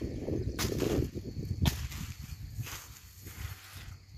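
Machete chopping banana leaves: three sharp strikes about a second apart, with the leaves rustling in between.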